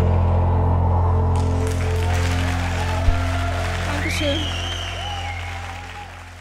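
Audience applause over sustained background music, the clapping starting about a second in, with a few voices. It all fades out near the end.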